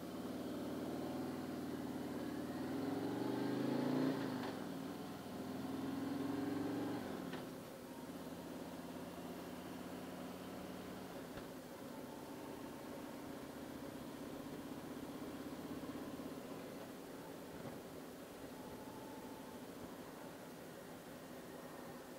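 Harley-Davidson Street Glide's V-twin engine pulling away and accelerating, its pitch rising and then dropping at upshifts about four and seven seconds in, then running steadily at cruising speed.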